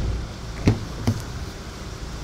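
Two short knocks about half a second apart as a Hyundai Santa Fe's rear door is unlatched and swung open, over a steady low hum.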